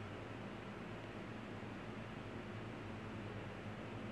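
Faint steady hiss with a low hum underneath: room tone, with no distinct sound event.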